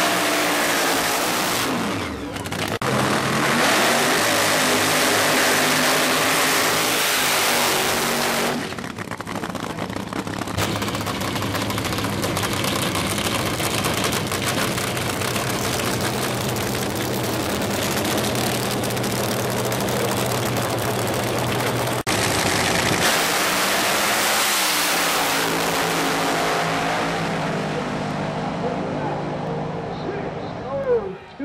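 Supercharged nitro AA/FC funny car engine: revved hard through a burnout, then a lower, steady loud idle while the car backs up and stages. Late on it runs at full throttle again and the sound fades away down the track.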